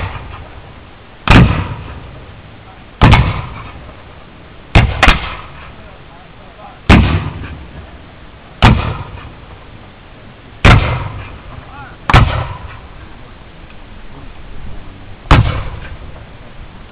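Black-powder rifle-muskets fired one after another along a line of soldiers, about nine shots at uneven intervals of one to two seconds, each sharp crack trailing off in a rolling echo: the men are loading and firing on their own after the file fire.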